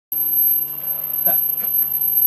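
Steady electrical hum and buzz from idle guitar amplifiers, with a few faint clicks over it.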